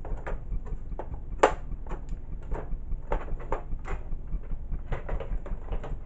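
Handling noise from a metal thread box and the camera: a run of irregular light clicks and knocks, the sharpest about one and a half seconds in, over a low steady hum.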